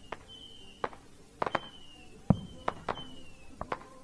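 Fireworks going off at a distance: about nine sharp pops and cracks at irregular intervals, the loudest a little past two seconds in.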